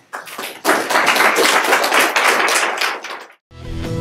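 Audience applauding, the clapping cut off suddenly a little over three seconds in. Guitar-led rock music starts just after the cut.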